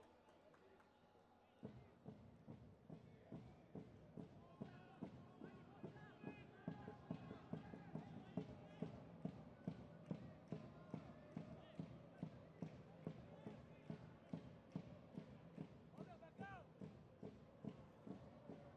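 Faint field sound: a steady rhythmic beat of about three knocks a second starts a couple of seconds in, with faint shouts of players on the pitch.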